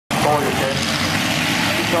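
Several dirt-track factory stock cars' engines running together in a steady drone, with a public-address announcer's voice over it.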